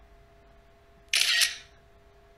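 A camera shutter sound, as of a phone snapping a picture: one sharp snap about a second in, over a faint steady hum.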